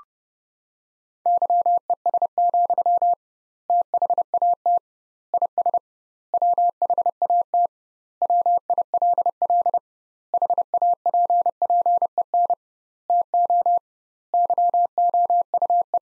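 Morse code sent as a keyed sine tone at about 700 Hz, at 30 words per minute with double word spacing: eight quick runs of dots and dashes, the first sending of the sentence "Yes, that is what will happen to you." It is preceded right at the start by a brief, slightly higher courtesy tone.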